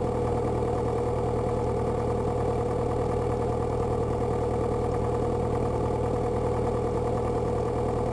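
Beechcraft Sundowner's four-cylinder Lycoming engine and propeller running steadily at low taxi power, heard from inside the cockpit as the plane lines up on the runway before takeoff.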